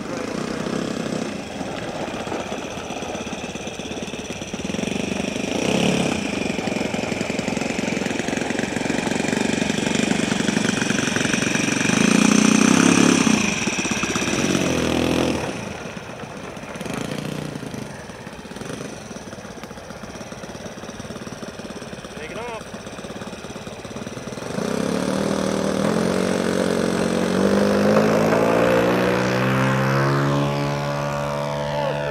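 Saito 1.00 four-stroke glow engine of a Hanger 9 P-40 RC warbird running at low throttle on the ground, its level swelling and dropping with the throttle. Near the end it opens up, its pitch climbing steadily as the takeoff run begins.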